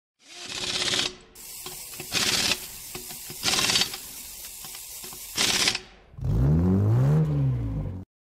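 Logo intro sound effects: four whooshes with mechanical clicking and ratcheting between them, then a loud low tone that rises and falls in pitch, like an engine revving, cutting off suddenly at the end.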